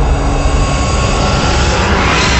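Cinematic logo-intro sound effect: a deep rumbling swell with a rising, jet-like whooshing hiss that builds toward the end.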